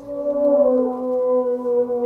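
Loop playing back through a looper pedal: a steady droning chord of several held tones. A higher note comes in about half a second in and slides down slightly.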